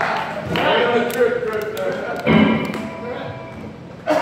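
Voices between songs, then about two seconds in a single amplified guitar chord is struck and left to ring, fading away.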